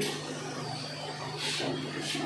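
Barber's scissors cutting a man's hair, one short crisp snip-and-rustle about one and a half seconds in, over a steady low hum in the room.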